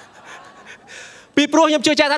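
A man's breathy exhalations close to a handheld microphone, then his speech starts again about one and a half seconds in.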